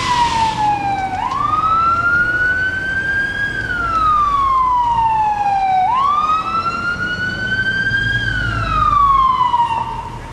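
Emergency vehicle siren in a slow wail, its pitch rising and falling about twice, over a low rumble. A burst of hiss in the first moment.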